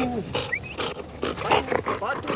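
A dog barking and yelping in a rapid run of short bursts, with pitched whining calls mixed in.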